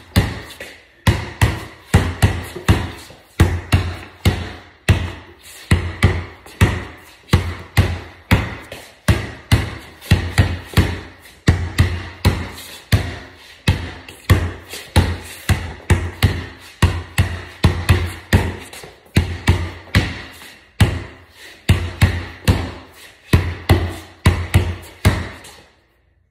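Basketball being dribbled on a hard floor, bouncing in a steady rhythm of roughly two bounces a second.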